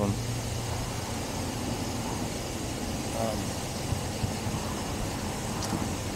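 Steady low hum of an idling vehicle engine with road traffic noise.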